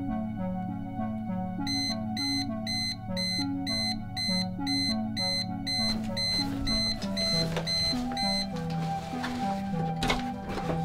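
A digital alarm clock beeping: short high electronic beeps in an even, fast series of about two to three a second. They start a couple of seconds in and stop near the end, over steady background music.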